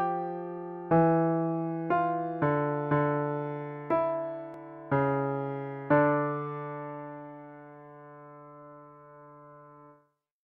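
Piano-like keyboard playback of a two-voice counterpoint exercise in D minor, a cantus firmus with the inverted counterpoint line below it in the bass. New notes are struck roughly once a second, then the final chord is held for about four seconds, fading, and cuts off at the end.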